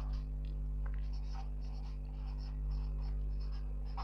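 Whiteboard marker writing a word on a whiteboard: a string of short, faint strokes, over a steady low hum.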